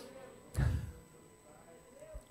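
A breath pushed into a handheld microphone held close to the mouth: a short puff with a low thump about half a second in, fading quickly. A faint steady electrical whine sits underneath.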